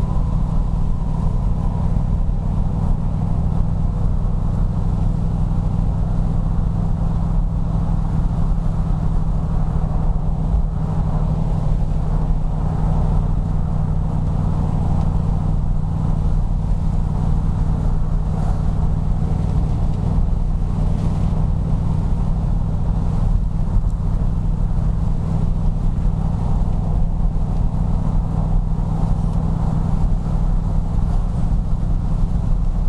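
Fuel-injected Chrysler 440 cubic-inch (7.2 L) V8 of a 1974 Jensen Interceptor Mk3 pulling steadily up a mountain grade, a deep, even throb with no revving.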